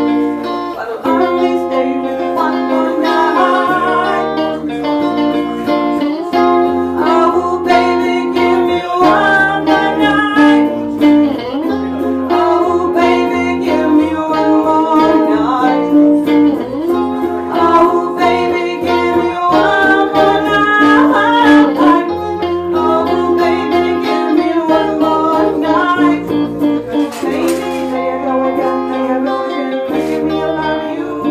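Live acoustic music: a woman singing a melody while strumming a small acoustic string instrument, with an electric bass playing a low, stepping bass line underneath.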